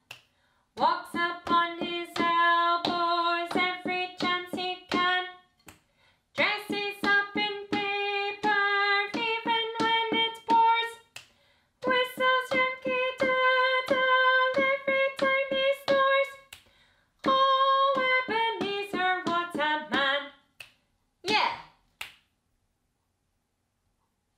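A woman sings a short children's counting song unaccompanied, in four phrases with brief gaps. A drumstick taps the floor on every syllable, and finger clicks fall in the rests.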